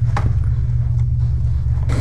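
A steady low rumbling drone, with a faint click about a fifth of a second in.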